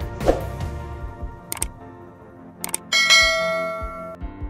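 Soft background music, with a single knock early on. Near the end come two quick clicks and then a bright bell ding that rings for about a second. These are the sound effect of a subscribe-button animation.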